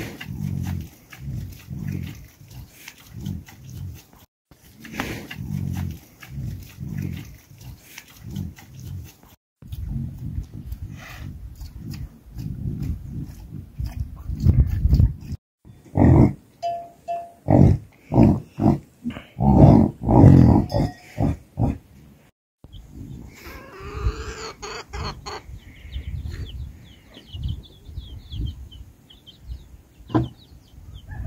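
Yaks grunting: runs of short, low grunts in quick succession, in several separate stretches. Near the end, higher wavering calls come in.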